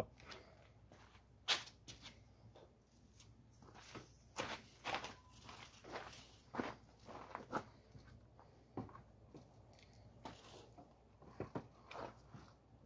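Faint, scattered scuffs and clicks: footsteps on gravel and the handling of a tool, with the angle grinder not yet running.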